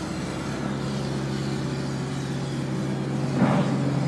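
The trailer's refrigeration unit's Yanmar diesel engine running at a steady speed, a constant drone with a low hum. A short burst of noise comes about three and a half seconds in.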